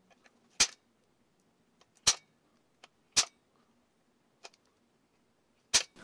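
A spring-loaded automatic center punch snapping four times, pressed by hand through a paper template to mark the four bolt-hole centres on steel. There are a few much fainter ticks between the snaps.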